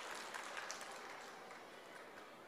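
Faint crowd applause, fading away.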